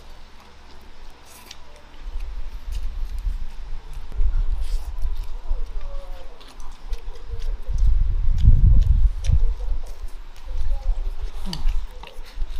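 Close-miked eating: chewing mouthfuls of rice and braised pork, with scattered light clicks of wooden chopsticks against a ceramic bowl. A low rumble comes in about two seconds in and is loudest around eight to nine seconds in.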